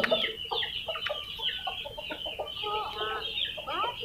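Chickens clucking, with many short, scattered calls and chirps, some gliding up or down.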